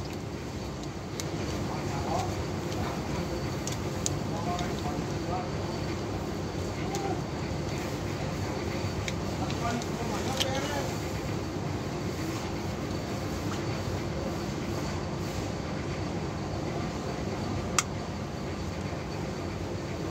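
Steady background rumble of vehicle traffic, with faint distant voices and a few light sharp clicks, the clearest one near the end.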